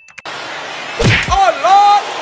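A steady hiss starts just after the beginning. About a second in comes a heavy thud, with a voice calling out in drawn-out, bending tones over it to the end.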